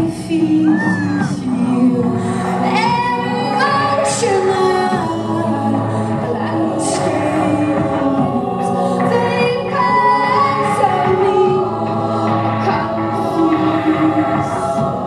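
Live music played through a hall PA: a woman's lead voice and a women's choir sing long held notes over a steady low synth tone, with sharp electronic beats now and then.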